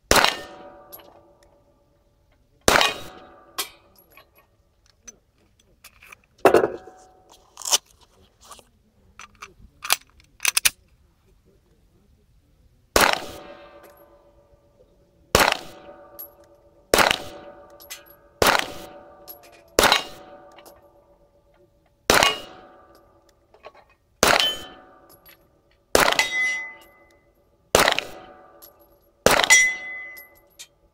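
Smith & Wesson M&P9 Pro 9mm pistol firing at steel targets, about seventeen shots at uneven intervals of roughly one to two and a half seconds. Most shots are followed by the clang and ringing of the struck steel plates, the sign of a hit.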